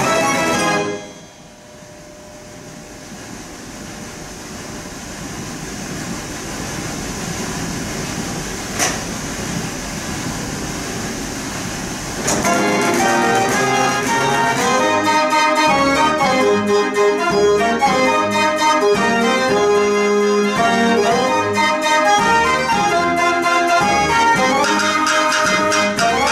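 A Mortier dance organ finishes a tune about a second in. A stretch follows of steady, noisy sound without notes that slowly grows louder, with a single click midway. About halfway through, the organ starts a new tune, with pipe melody over a steady beat.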